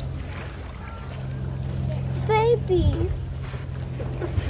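A brief wavering vocal exclamation a little over two seconds in, over a steady low hum.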